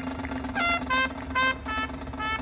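Marching band brass playing four short, separate accented notes.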